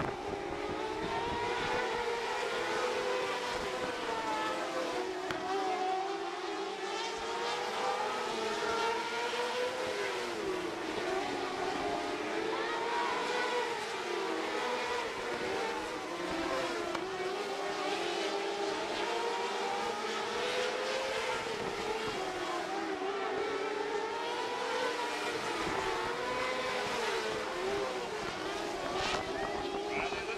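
Winged sprint cars racing on a dirt oval, their V8 engines running continuously, the pitch rising and falling over and over as the cars go through the turns and down the straights.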